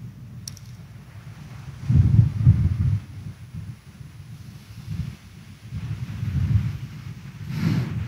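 Low, muffled rumbling and shuffling in uneven patches, with a single click about half a second in: a congregation kneeling down.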